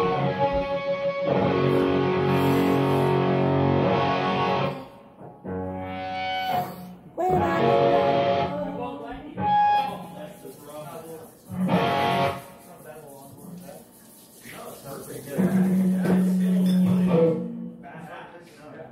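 Guitar played through an amplifier with the gain up, chords strummed in several loud bursts with short pauses between them.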